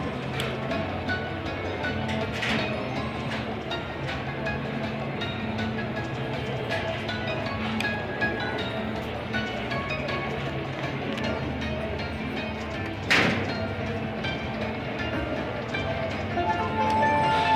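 Panda Magic slot machine playing its free-game bonus music, a looping tune over a shifting bass line, as the reels spin. One sharp knock stands out about thirteen seconds in.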